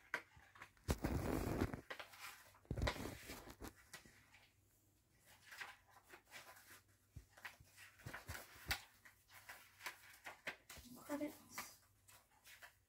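Rustling and clicking of a CD case being handled and its paper booklet being opened and leafed through, with two louder rustles about one and three seconds in.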